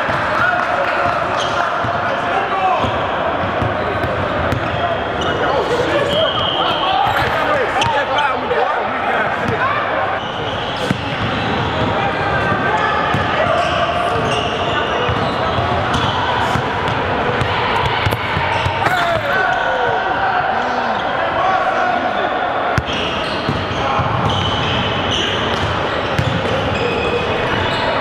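Basketballs bouncing on a hardwood gym floor, with players' shouts and chatter echoing in a large hall.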